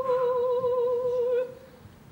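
A single opera voice holding one soft, sustained note with a gentle vibrato, which fades out about one and a half seconds in.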